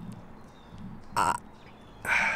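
A single short, sharp sniff through the nose about a second in, from a man who is tearing up.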